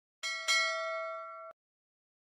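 A bell chime sound effect of the kind laid over a subscribe button. It is struck, struck again half a second later with a sharp click, rings about a second and is cut off suddenly.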